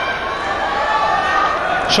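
Arena crowd: a steady, dense din of many voices.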